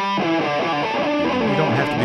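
Les Paul-style electric guitar played through a Boss DS-2 Turbo Distortion stacked after an overdrive pedal, a continuous run of distorted chords and notes.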